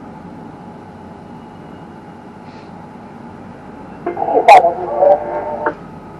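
Steady hum inside a tower crane cab, then about four seconds in a short two-way radio transmission of about a second and a half, with a sharp click in it: the ground crew calling the operator.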